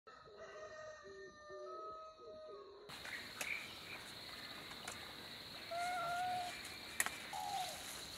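Birds singing and calling, with clear whistled calls about six and seven seconds in and a few light clicks among them. The sound changes abruptly about three seconds in.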